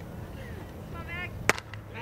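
Softball bat striking a pitched ball: one sharp crack about one and a half seconds in. It is solid contact on a long hit that onlookers immediately call gone.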